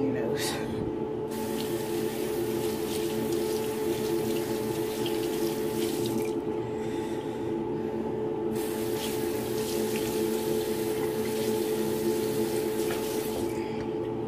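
Bathroom sink tap running with water splashing as a face is rinsed; the water sound starts about a second in, stops for about two seconds in the middle, and runs again until near the end. A steady hum runs underneath.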